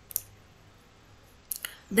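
Computer mouse clicks: one sharp click just after the start, then two quick clicks close together about one and a half seconds in, like a double-click. A man's voice starts right at the end.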